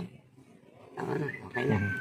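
A person's low, wordless voice, murmuring or laughing, in the second half, with a thin high whistle-like tone sliding slightly downward near the end.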